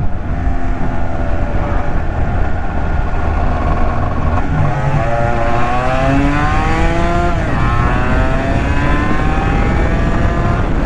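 Honda NS250R's two-stroke V-twin engine pulling under throttle. About four and a half seconds in, the engine note climbs and then drops sharply, and it does so again about seven and a half seconds in: the bike revving up through the gears with two upshifts.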